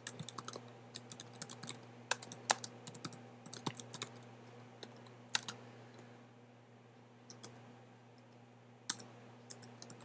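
Typing on a computer keyboard: a quick run of key clicks for about the first five seconds, then a few scattered keystrokes, over a steady low hum.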